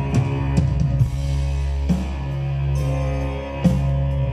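Live band playing an instrumental passage: sustained deep bass notes under a handful of heavy drum hits, with no singing.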